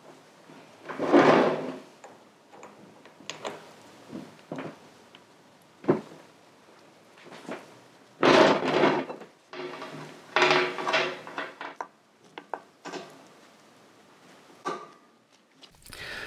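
Motorcycle roller chain rattling and clinking in irregular bursts as it is handled and fed around the sprockets, with a sharp click about six seconds in.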